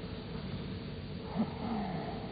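Steady hiss of an old broadcast recording, with a brief low vocal sound from a man about a second and a half in, a short breathy voiced sound that falls in pitch.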